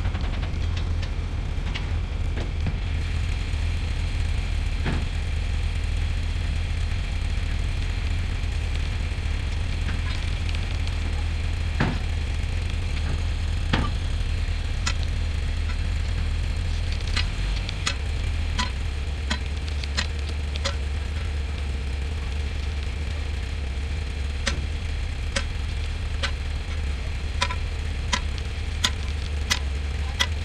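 A winch hauls a steel bulkhead vessel up a dockyard slipway on a wire rope: a steady low engine drone with scattered sharp clicks and ticks, which come more often in the second half.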